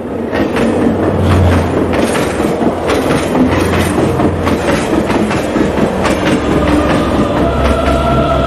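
Logo-intro sound design: a loud, dense rumble full of rapid clattering hits. Sustained musical tones come in near the end, building into the intro music.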